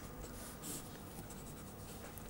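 Pen tip scratching faintly on paper as an equation is written, in short uneven strokes.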